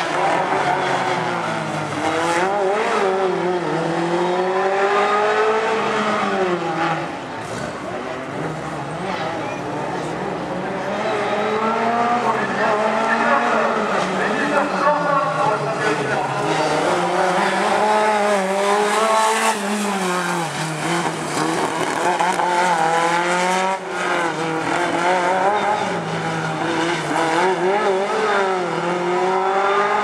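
Simca 1000 Rallye's rear-mounted four-cylinder engine driven hard, its revs rising and falling again and again as the driver accelerates, lifts and shifts through the tight turns of a slalom course.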